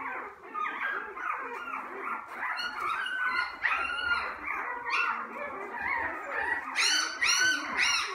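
A litter of newborn puppies squeaking and whimpering together, many short high cries overlapping without a break, with a louder cluster of cries near the end.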